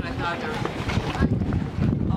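Wind buffeting the microphone, an uneven low rumble, with voices briefly in the first half second.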